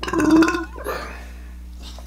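A man's burp, loud and rough, lasting about half a second at the start, with a smaller trailing sound just after.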